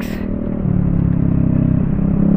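Scooter's single-cylinder engine running under throttle on the move, its note strengthening a little over half a second in as the scooter picks up speed, with a low road and wind rumble beneath.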